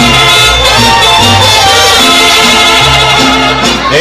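Mariachi band playing live: strummed guitars under held melody notes, with a steady run of bass notes beneath.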